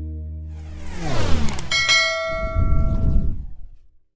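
Outro sound-effect sting: a low held drone fades, falling whooshing sweeps lead into a single bright bell-like strike about two seconds in, which rings for over a second over a low rumble and then fades out.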